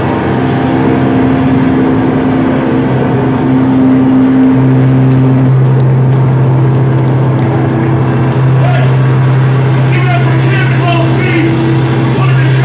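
Electric guitar and bass amplifiers holding a loud, steady, droning low note as the song rings out, getting stronger about four seconds in. Over the last few seconds a voice speaks or shouts over the drone.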